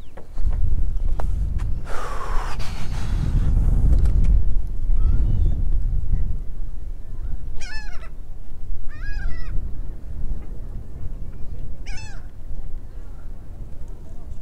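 Wind buffeting the microphone in a low rumble, with a falling whoosh about two seconds in. Gulls call three times, twice near the middle and once near the end.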